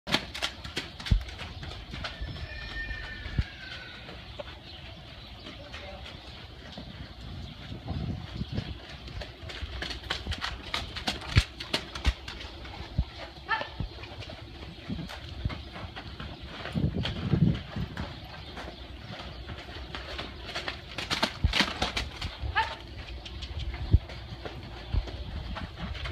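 Hooves of a young saddled thoroughbred filly drumming on the dirt of a round pen as she trots and canters around the handler, giving irregular thuds and sharp knocks over a low rumble. A short chirp is heard about two to three seconds in.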